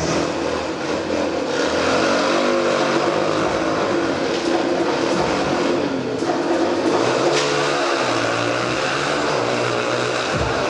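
Motorcycle engines revving inside a steel-mesh globe of death, their pitch rising and falling over and over as the riders circle the sphere.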